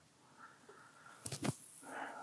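A pause with near silence, then about a second and a quarter in a short, sharp, quiet burst followed by faint breathy noise: a man's stifled laugh.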